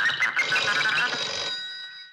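A telephone bell ringing, a few steady high tones that die away over the last half second, just before it is answered. Background music is heard at the start.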